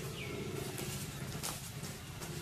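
A brief high animal call, falling in pitch, just after the start, over a steady low hum, with a sharp crackle of twigs about one and a half seconds in.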